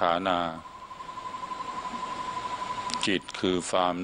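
A night animal's steady trill, pulsing quickly and evenly at one unchanging pitch for about two and a half seconds.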